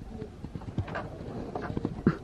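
A string of light, irregular knocks and taps as things are handled and moved about, with a low rumble underneath.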